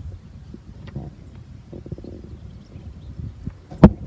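Wind buffeting the microphone outdoors, a low uneven rumble with faint scattered rustles. A single sharp knock just before the end.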